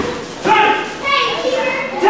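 People talking: voices in speech, with no other sound standing out.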